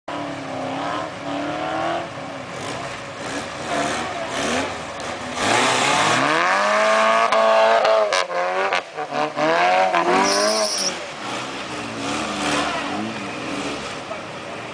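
Nissan SR20VE two-litre four-cylinder engine in an off-road buggy revving hard under load on a steep hill climb. The revs surge sharply about six seconds in and rise and fall repeatedly, loudest for several seconds, then settle to a lower, steadier note near the end.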